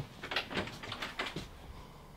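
An RV's wooden bathroom door being pushed open: a string of light clicks and knocks from the latch and panel over the first second and a half.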